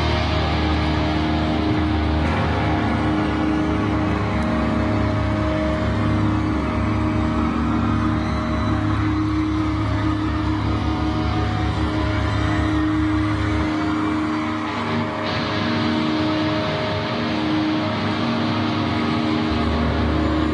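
Live pop-punk band music played loud through a concert PA, with sustained guitar chords held over a steady bass. The deep bass drops away about two-thirds of the way through while the chords ring on.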